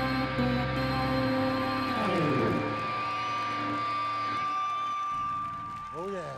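End of a live synth-rock song: a held band chord cuts off about a second in, then an analogue synth sweeps down in pitch while one steady high synth tone keeps sounding.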